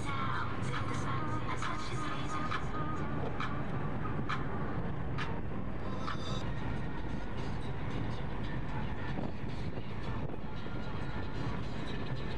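Steady road and engine noise inside a moving car, with faint music playing and a few light clicks in the first half.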